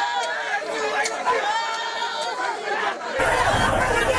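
A crowd of protesters shouting and clamouring, with many voices overlapping. About three seconds in, the sound cuts abruptly to a fuller, lower crowd din.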